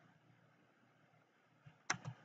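Near silence, then two computer keyboard keystrokes near the end, a faint one and then a sharper, louder one.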